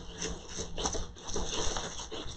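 Faint, irregular rubbing and light crinkling of a sheet of transfer foil being rubbed down with a small pad onto the purse's textured surface, pressing the foil into the texture so that more of it transfers.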